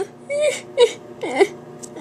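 A girl's voice making pretend whimpering sobs: three short sobbing cries with wavering pitch.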